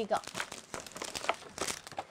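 Plastic jewellery packets crinkling as they are handled, an irregular string of short crackles.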